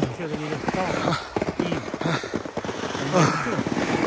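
Irregular short crunching and scraping noises in crusty, churned snow, with a few brief bits of men's voices.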